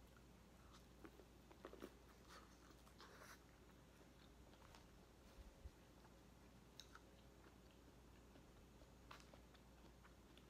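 Faint mouth sounds of someone biting and chewing buttered corn on the cob: scattered soft clicks and smacks, most of them in the first few seconds, then a few more spread apart.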